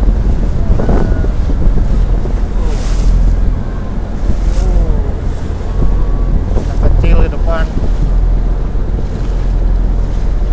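Small wooden fishing boat underway in choppy water: its engine drones steadily beneath heavy wind buffeting on the microphone and the splash of waves against the hull.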